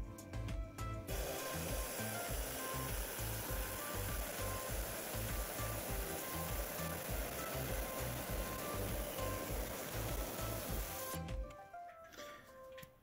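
Lapidary trim saw's diamond blade cutting through a Dryhead agate nodule: a steady grinding hiss that starts about a second in and stops just before the end. Background music with a steady beat plays underneath.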